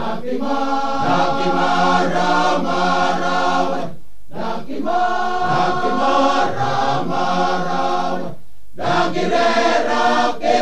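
Male choir singing in harmony, many voices holding sustained chords. The phrases break off briefly twice, about four and eight and a half seconds in.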